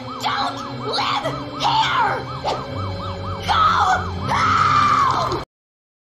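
Cartoon shrieks over a fast siren-like warble, about five wobbles a second. Several loud rising-and-falling cries end in one long held cry that cuts off suddenly near the end.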